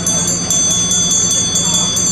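Taoist priest's brass ritual handbell rung in a steady rapid rhythm, about five strokes a second, its high ringing tones sustained throughout.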